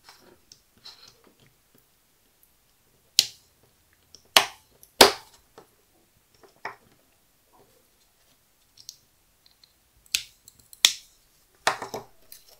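Sharp plastic-and-metal clicks of a 3-volt battery holder and its 9-volt-style snap connector being handled and fitted together: a handful of clicks in two clusters, a few seconds in and again near the end.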